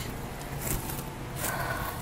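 Outdoor background noise: a low steady rumble on the microphone, with a faint thin tone near the end.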